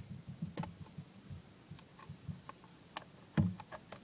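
Irregular light clicks and soft low knocks, scattered unevenly, with the loudest knock about three and a half seconds in.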